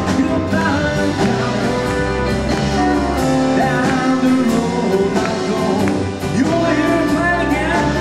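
Live rock and roll band playing electric and acoustic guitars, bass, drums and grand piano over a steady drum beat.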